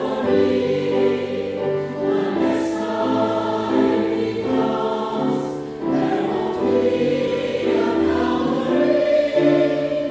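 Mixed church choir singing an anthem in harmony, with piano accompaniment.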